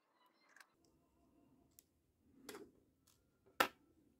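Small clicks and taps of a jeweler's screwdriver and fingers on the opened circuit board and heatsink: a few faint ticks, then one sharper click near the end.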